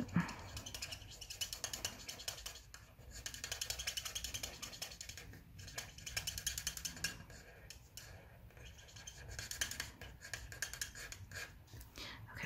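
Coloring marker's nib scratching on cardstock in short, quick strokes while a small stamped present is coloured in, coming in several spells with brief pauses between them.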